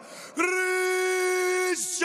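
Ring announcer's voice over the arena PA, drawing out the winner's name in one long held call that starts about half a second in, its pitch falling at the end.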